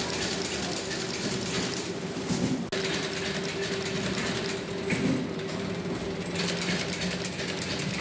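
Automatic notebook wire-stitching machine running: a steady mechanical clatter of its drive and conveyor with a low hum, broken by a louder stroke every two to three seconds.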